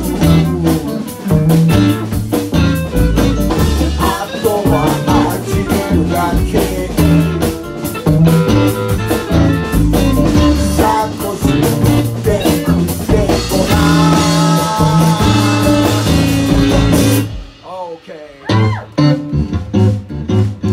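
A band playing a song with electric guitar, bass and drum kit, which stops abruptly about three seconds before the end. After a short lull come a few gliding notes, then a guitar starts picking single notes.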